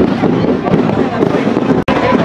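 A string of firecrackers crackling rapidly and continuously, mixed with a crowd's voices, broken by a brief gap near the end.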